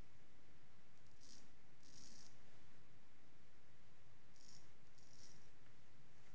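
Wade & Butcher straight razor scraping through three days' stubble in four short strokes, heard as two pairs of brief, crisp rasps.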